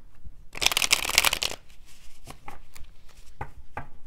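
A deck of tarot cards shuffled by hand: a quick burst of rapid card flicks about half a second in, lasting about a second, then a few separate soft clicks of the cards being handled.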